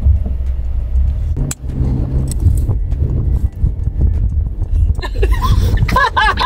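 Low, steady rumble of road and engine noise inside a moving car's cabin, with a brief click about a second and a half in.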